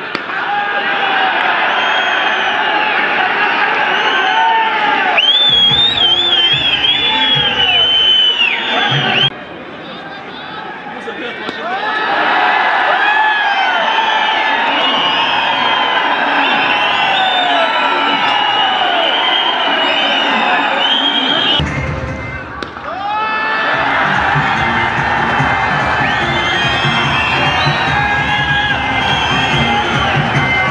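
Crowd of spectators cheering and shouting, many voices rising and falling in pitch together, mixed with background music that has a beat. The sound changes abruptly several times, as the edit cuts between clips.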